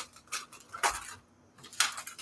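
Hands handling a clear plastic bag packed with paper: a few short crinkles and taps as the pack is set down on the cutting mat, with a brief pause in the middle.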